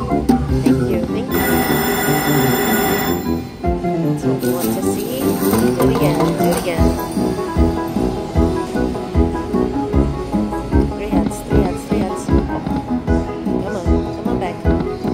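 Huff N' More Puff slot machine playing its free-games bonus music, with a steady beat as the reels spin and stop. A bright chiming jingle rings out about a second and a half in and lasts about two seconds.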